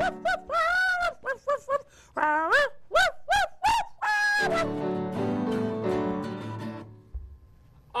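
A string of short, high, dog-like yips and whimpers over a held keyboard and guitar chord. About four seconds in they give way to a longer sustained chord that fades away near the end.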